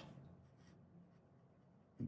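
Faint scratching of a fountain pen's 18-carat gold extra-extra-fine nib writing on thin 52 gsm Tomoe River paper, the nib giving a light, pleasant feedback without skipping.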